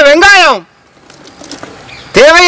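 A person's voice speaking, ending about half a second in, followed by quiet background with no clear sound.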